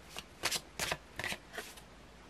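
A tarot deck being shuffled by hand: about five short, crisp card snaps and rustles in quick succession over a second and a half.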